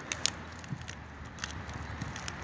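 A few sharp clicks and light crackles over a steady low hum, the loudest click just after the start and another pair about halfway through.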